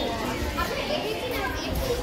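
Several people talking at once, their voices overlapping in busy, unintelligible chatter.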